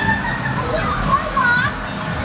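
Background chatter of children's voices, with a few high-pitched calls near the middle and second half.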